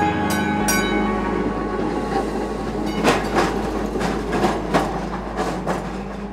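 A train or streetcar running on rails over a steady low drone, with irregular clattering knocks from about halfway through.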